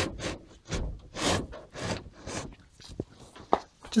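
Caravan window pane sliding out of its pivot track along the top of the frame, giving short rubbing scrapes about two a second, with a sharp click about three and a half seconds in.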